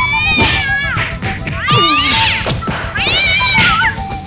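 Two house cats fighting, yowling in three long drawn-out calls that rise and fall in pitch.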